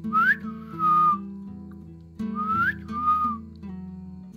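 A clear two-part whistle, a quick rising note followed by a held lower note, given twice, over acoustic guitar background music.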